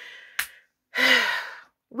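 A woman's breathy intake, a short click, then a louder breathy sigh with a slight falling voice in it, lasting just under a second.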